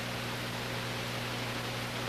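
Steady hiss with a low electrical hum under it, the noise floor of an old race-broadcast recording, with no commentary and no distinct event.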